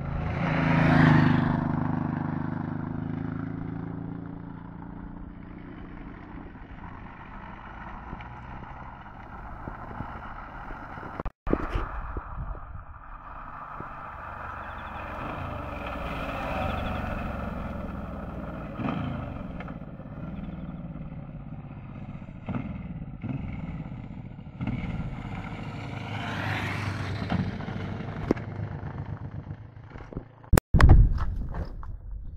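V-twin cruiser motorcycles riding past: a Suzuki Intruder M1800R passes close about a second in, loudest there, its engine note falling as it goes by. The sound cuts out briefly about 11 seconds in. Further passes swell around 16 seconds and again around 27 seconds in.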